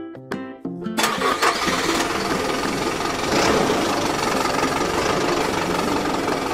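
Vehicle engine sound effect that starts up about a second in and keeps running steadily, over children's background music. A few short musical notes come before it.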